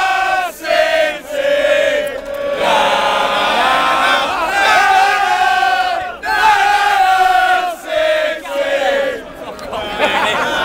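A group of male football supporters chanting a song together at full voice. It comes in held, sung phrases of a second or two, with short breaks for breath between them.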